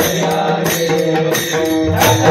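Varkari bhajan: a group of men chanting in unison to a steady beat of small brass hand cymbals (taal), clashing about twice a second.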